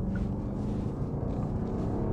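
Genesis EQ900 Limousine's 5.0-litre V8 engine pulling under acceleration at the start of a high-speed run, heard from inside the cabin as a steady low drone with road noise.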